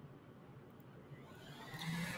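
Faint, even microphone hiss and room tone in a pause between spoken words, with no distinct sound.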